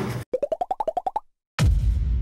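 Edited-in cartoon sound effect: a quick run of about a dozen short popping blips, each a little higher in pitch than the last, over about a second. It cuts to silence, and room sound comes back shortly after.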